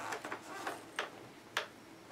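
A few scattered light clicks and ticks of small plastic doll accessories being handled in a hard plastic organizer case.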